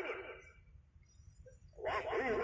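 Running football commentary: the voice trails off, and a short lull with only a low rumble follows. The voice starts again near the end.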